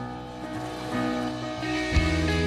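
Instrumental outro music: held notes that change about every half second and grow louder, then a loud full-band entrance right at the end.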